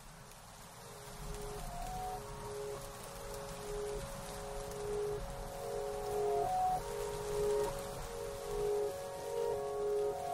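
Background music fading in: a slow melody of long held notes that grows louder, over a faint steady hiss.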